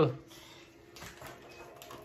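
A man's voice breaks off at the very start, then quiet room tone with a faint steady hum and a couple of faint clicks.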